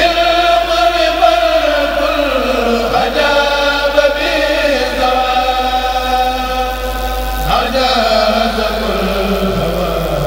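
A Mouride kourel (religious chorus) chanting a khassaide in unison, in long held notes that slide slowly down and back up in pitch.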